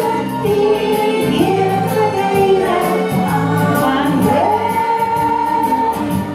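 A woman singing into a microphone over an instrumental accompaniment with a steady beat. Her notes are long and held, and a little over four seconds in she slides up to a long high note.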